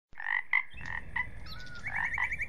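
Frogs croaking: short calls a few tenths of a second apart, with a quick run of chirps near the end.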